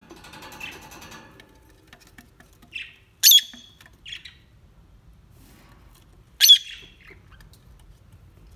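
Rosy-faced lovebirds calling: two loud, sharp shrieks about three seconds apart, with shorter chirps just before and after the first, following softer chatter at the start.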